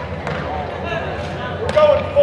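Players' voices calling out across a large indoor turf facility. Near the end comes a single sharp smack of a softball, followed at once by a loud shout.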